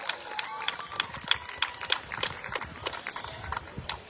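Scattered clapping from an audience: sharp, irregular claps several times a second, with faint cheering voices in the first second.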